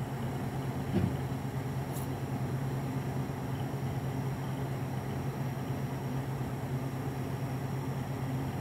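Steady low hum of room noise, with a brief soft knock about a second in and a faint click around two seconds in.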